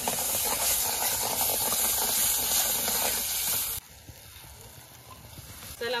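Wet ground onion-and-dried-coconut masala paste sizzling and crackling loudly as it hits hot oil in a metal kadhai and is stirred with a spoon. A little under four seconds in the sound drops abruptly to a much fainter hiss.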